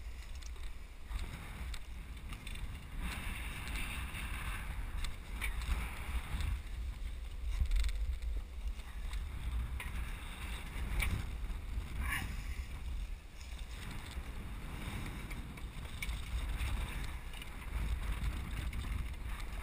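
Wind buffeting the microphone at a sailboat's masthead: an uneven low rumble that swells and eases, with a few light clicks scattered through it.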